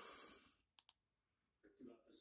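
Near silence with two faint, sharp clicks in quick succession a little under a second in, after a man's voice trails off.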